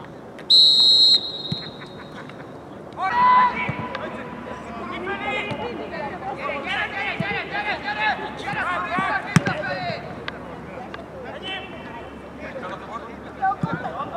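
A referee's whistle gives one short, steady, high blast about half a second in, restarting play from a dead ball. Players then shout to one another across the pitch, and a single sharp knock comes about nine seconds in.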